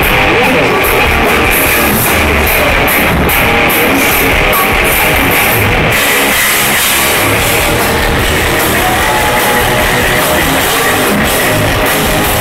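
Hard rock band playing live and loud: distorted electric guitar over bass and a drum kit with repeated cymbal strokes, with no singing.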